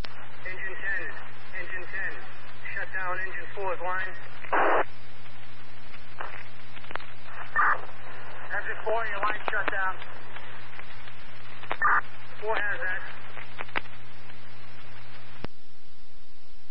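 Fire department two-way radio traffic on a scanner feed: garbled, unintelligible voice transmissions over a steady hum and hiss, broken by a few short bursts of noise. The hum cuts off with a click near the end as the transmission drops.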